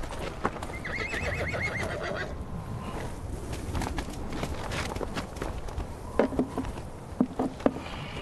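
A horse whinnies once with a quavering trill, about a second in. Several sharp knocks follow near the end.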